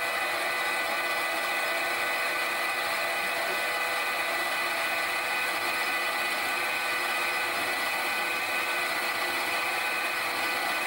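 Metal lathe running with its four-jaw chuck spinning while a centre drill in the tailstock drill chuck cuts a recess into the end of a silver steel bar: a steady whine with several high tones.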